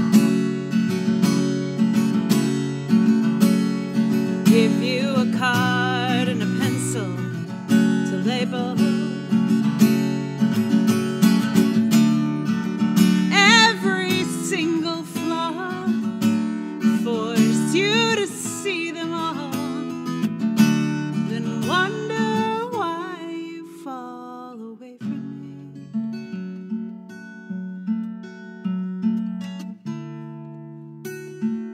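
A song on acoustic guitar, with a woman's voice singing long, wavering notes over the playing. The voice drops out about two-thirds of the way through, leaving the guitar playing alone.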